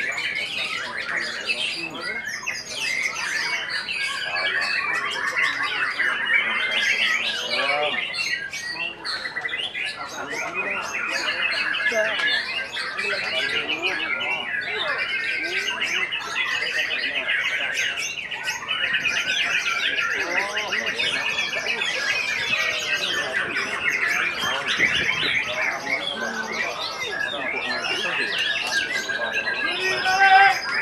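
Several white-rumped shamas (murai batu) singing at once in a continuous, dense stream of rapid repeated notes, trills and whistles, with people's voices underneath.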